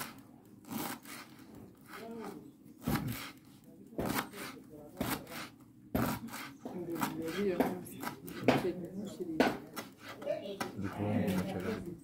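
Irregular sharp knocks and scraping strokes, about one or two a second, with voices talking in the background.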